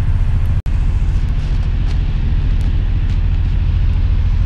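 Steady road and engine rumble inside the cabin of a car moving at highway speed. The sound cuts out for an instant about half a second in.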